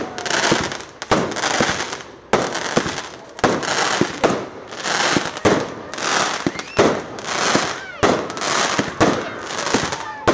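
Aerial fireworks firing in a rapid sequence: a sharp bang about once a second, each followed by a fading crackle as the bursts spread into sparkling stars.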